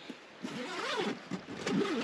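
Zipper on the fabric front panel of a camp kitchen organizer being pulled open in several strokes, its pitch rising and falling with each pull.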